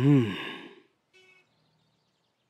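A man's sigh: one breathy voiced exhale falling in pitch, lasting under a second.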